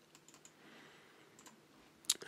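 Faint computer keyboard typing: a few short, soft keystrokes over near-silent room tone.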